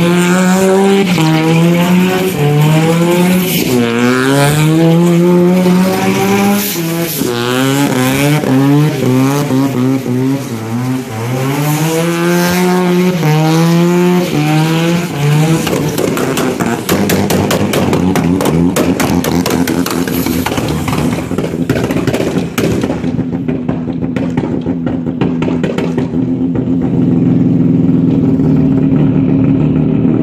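Bridgeported turbo 13B rotary engine in a Toyota KE25 Corolla revving hard during a burnout, its pitch swinging up and down repeatedly. About halfway through it drops to a lower, steadier running note broken by a rapid, choppy pulsing.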